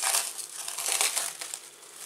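Plastic cling film crinkling and crackling irregularly as it is peeled off a glass bowl, loudest in the first second and then dying down.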